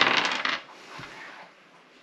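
A die rolling and clattering on a wooden tabletop for about half a second, then one light tap about a second in.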